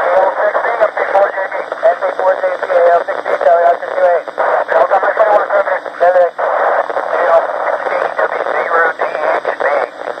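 Amateur radio operators' voices relayed through the AO-91 FM satellite, played from a radio receiver's speaker. The speech is thin, like a telephone, with a hiss behind it and scattered brief crackles.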